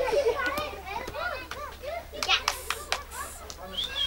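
A crowd of children shouting and calling over one another, many high voices overlapping, with a few sharp clicks among them.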